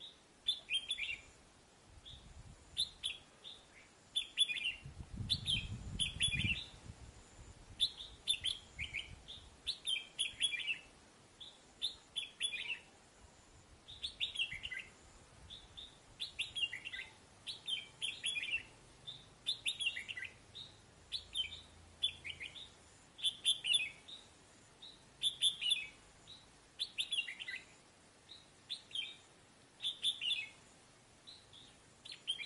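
Caged red-whiskered bulbul calling over and over: short, chattering "ché chéc" phrases, one every second or two. The bird is nearly through its moult.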